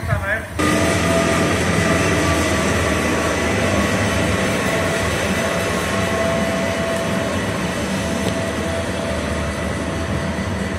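Electric-hauled passenger train pulling out of the station, its coaches rolling past close by: a loud steady rumble with several held whining tones, easing slightly as it draws away. It starts abruptly about half a second in, after a brief bit of other sound.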